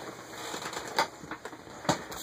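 Two sharp switch clicks about a second apart, with faint handling rustle between them.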